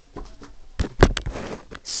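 Handling noises: a few sharp clicks and knocks, the loudest about a second in, followed by a short rustle.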